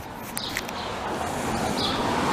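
A car coming along the street, its tyre and road noise swelling steadily as it approaches.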